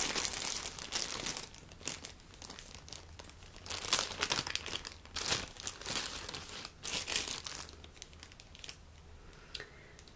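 Thin clear plastic bag crinkling in irregular bursts as hands open it and pull out a car-socket power cord and plug. The crinkling is loudest and busiest in the first second and a half, then comes in shorter bursts with quieter gaps.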